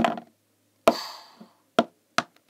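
Hard plastic toy pony figures knocking on a tabletop as one pony is shoved over: a few sharp knocks, the loudest about a second in with a short clattering rattle after it.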